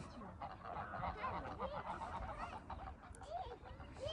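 A flock of greylag geese honking: many short calls overlapping in a continuous chorus.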